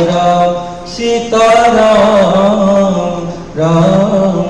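Hindu devotional chanting sung in long held, gently wavering notes. The phrases break briefly about a second in and again near the end.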